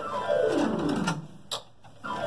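A voice singing one long note that slides down in pitch over about a second, followed by a short click.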